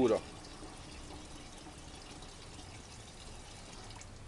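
A thin stream of water trickling steadily from a drinks can into a metal bucket of liquid: the water that has separated out of adulterated fuel.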